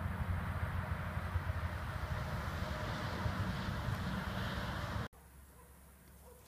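Low, gusty rumble of wind buffeting the microphone outdoors, which stops abruptly about five seconds in, leaving only a faint background.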